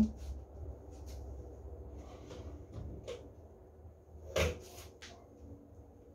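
Thick batter scraped out of a blender jar with a plastic spatula into a glass bowl, with a few light clicks and one louder knock about four and a half seconds in.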